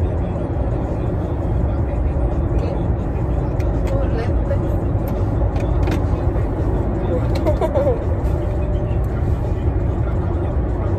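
Car cabin noise: the steady low rumble of the running car, with a few light clicks around the middle as the overhead sunglasses holder is handled.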